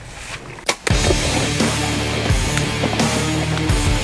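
Heavy rock background music starts abruptly about a second in, with a driving beat, just after a short sharp click.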